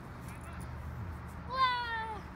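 A girl's single high-pitched cry about one and a half seconds in, drawn out for about half a second and falling slightly in pitch.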